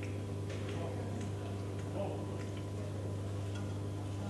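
Metal spoons clicking lightly against ceramic soup plates and bowls during tasting: a few scattered short clicks over a steady low hum.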